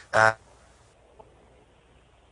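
A man's short hesitant "uh" at the very start, then near silence with only faint hiss.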